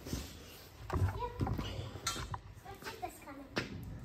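Faint, indistinct voices with a few light knocks and clicks.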